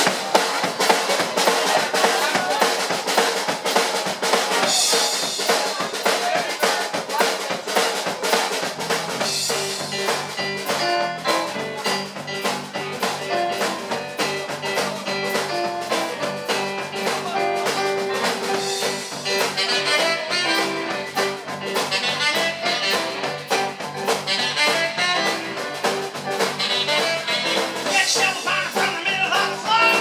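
Live pub rock-and-roll band playing an instrumental passage: drum kit with snare, rimshots and bass drum keeping a steady beat under electric guitar and keyboard. A low bass part comes in about nine seconds in.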